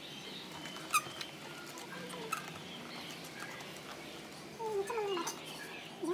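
Light clicks and taps of cardboard 3D puzzle pieces being handled, with one sharper click about a second in. A voice makes wordless sounds that rise and fall in pitch, louder near the end.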